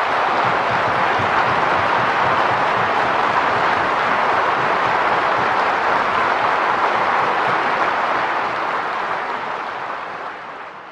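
Audience applauding, a dense steady clapping that slowly fades near the end.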